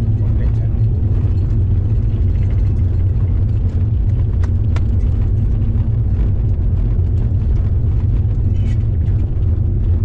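Steady low rumble of road and drivetrain noise inside a moving car's cabin, with faint scattered clicks and rattles.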